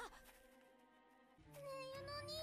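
Near silence, then about one and a half seconds in a child's high, drawn-out voice from the anime's dialogue begins.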